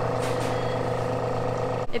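Goodnature X-1 Mini cold press juicer's motor running with a steady hum during a press cycle on nut milk, cutting off suddenly near the end.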